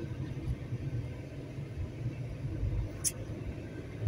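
Low, steady rumble of road and engine noise inside a moving car's cabin, with one brief high squeak about three seconds in.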